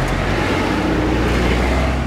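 A car engine running close by, a steady low hum under road noise.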